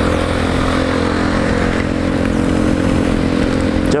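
Motorcycle engine holding a steady note at cruising speed, under a steady rush of wind and wet-road noise from riding in heavy rain.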